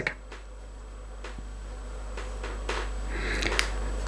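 A few light clicks and taps as a revolver's detached grip and its frame are handled, with a low steady hum underneath that slowly grows louder.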